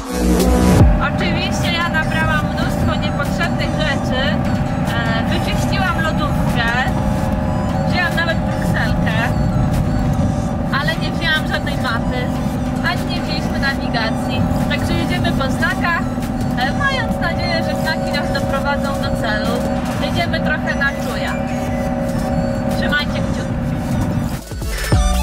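Campervan cab while driving: steady engine and road rumble throughout, with voices talking over it.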